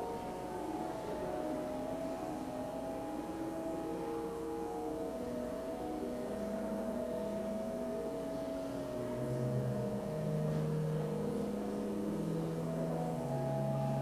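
Organ music: a slow prelude of long held chords moving from note to note, with low bass notes coming in about two-thirds of the way through.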